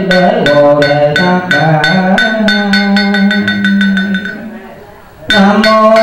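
Buddhist funeral chanting by a monk, sung through a microphone and amplified, over a quick, steady beat of percussion strikes, about three or four a second, with ringing bell tones under it. A little over four seconds in, the chant and beat stop and fade away for about a second, then start again at full strength.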